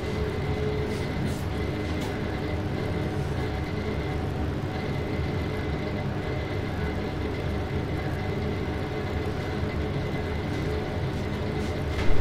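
Bakery chiller's refrigeration unit running: a steady hum with a faint high whine.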